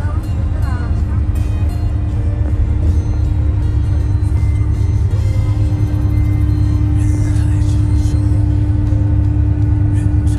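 Steady low rumble of a coach bus's engine and tyres, heard from inside the cabin while it drives, with a steady hum over it. Music plays along with it.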